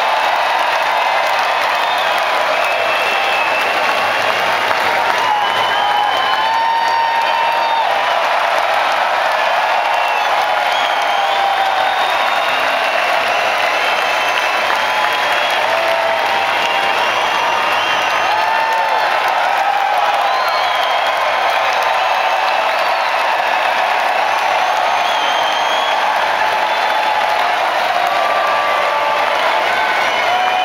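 A large arena crowd applauding and cheering steadily, with many voices shouting and whooping throughout.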